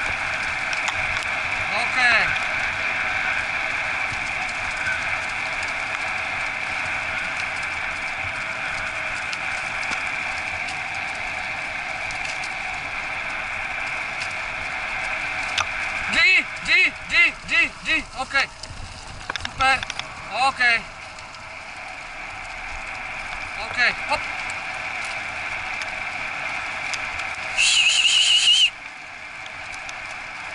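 Wheels of a husky-drawn training rig running steadily over a dirt forest trail, a constant rolling rush. Bursts of short chirping whistles come twice, about sixteen and twenty seconds in, and one steady high whistle of about a second sounds near the end.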